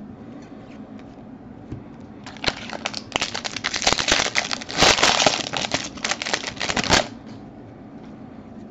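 Foil wrapper of a 2019 Bowman Draft jumbo pack being torn open and crinkled by hand: a crackling rustle that starts about two and a half seconds in, is loudest around the middle, and stops abruptly about a second before the end.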